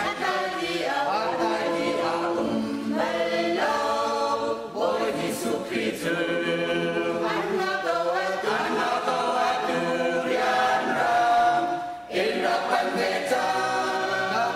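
Mixed-voice church choir of men and women singing unaccompanied in harmony, with a brief break about twelve seconds in.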